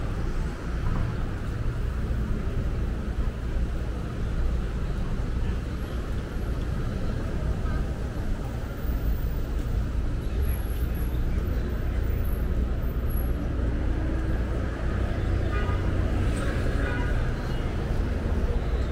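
Steady city street traffic noise: a continuous low rumble of passing cars and buses, with background voices.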